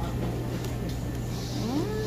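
Steady low hum of restaurant room noise, with a short rising tone near the end.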